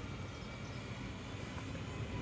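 Faint, steady outdoor background noise: a low rumble under an even hiss, with no distinct events.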